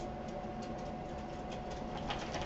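Steady background hum and hiss with a faint, constant whine, and a few faint ticks.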